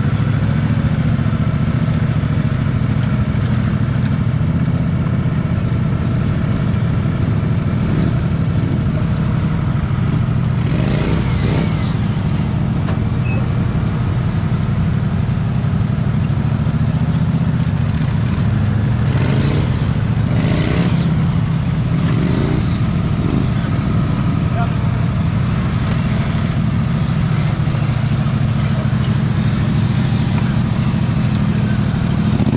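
Small engines of modified lawn tractors running steadily at close range, with a few short bursts of voices partway through.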